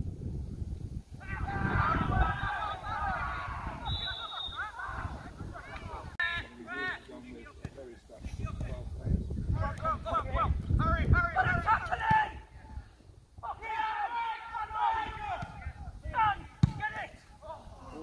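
Footballers shouting and calling to each other across the pitch in several bursts, over low wind rumble on the microphone. There is one sharp knock near the end.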